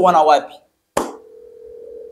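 A click about a second in, then a steady single-pitch telephone tone on a phone's loudspeaker while a call is being placed, in the manner of a ringback tone.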